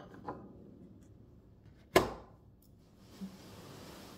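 A single sharp knock on the wooden table about halfway through, as something is set down or bumped near the phone. Faint rustling of handling follows near the end.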